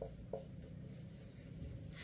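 Marker pen writing on a whiteboard: faint strokes as a word is written, with a couple of short marks near the start.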